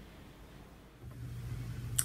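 Quiet room tone, then about a second in a steady low hum starts and holds, the background hum of the next recording.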